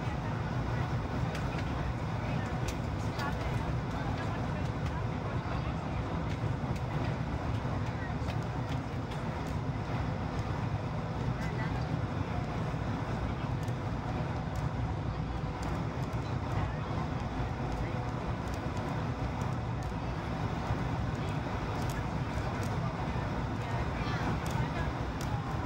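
Steady cabin roar of a Boeing 737-800 on final approach, heard at a window seat over the wing: its CFM56 engines and the airflow over the extended flaps, with a deep low rumble.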